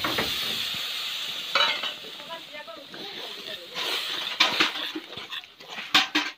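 Water poured into a hot kadai of fried masala paste hits the oil with a loud sizzle right at the start. The hiss of frying fades over the next second or so. A steel spatula then stirs and scrapes around the metal pan in quick strokes.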